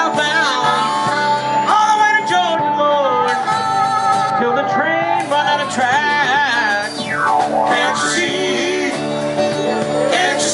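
Live blues band playing: a harmonica, cupped against a microphone, plays a lead line with a long held note early on and bent notes, over electric guitar accompaniment.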